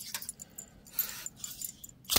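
Faint handling noise of folding pocketknives: light clicks and rustles as a knife is set down on a mat and another is picked up.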